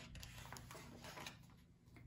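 Faint rustle and light clicks of a picture book's page being turned by hand, dying away to near silence near the end.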